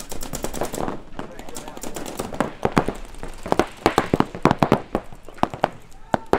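Paintball markers firing: a fast string of shots at the start, then scattered pops and short bursts, the sharpest clustered near the middle and end. Shouting voices come in faintly early on.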